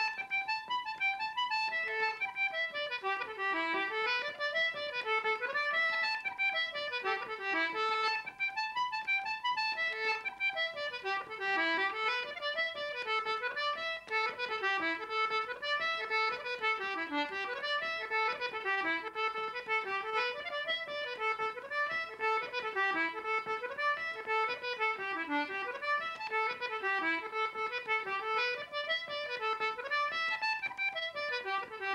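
Concertina played solo: a fast Irish traditional tune in quick runs of notes that climb and fall without a break.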